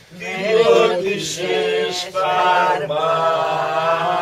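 A small group of elderly men and women singing a song together, unaccompanied, in long held notes, with a brief break between phrases about two seconds in.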